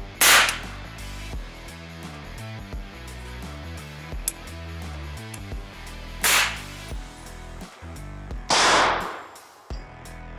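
Single rifle shots from an AR-pattern rifle, fired one at a time as test shots while tuning an adjustable gas block until the bolt locks open: one just after the start, another about six seconds in, and a longer burst near the end, over background music.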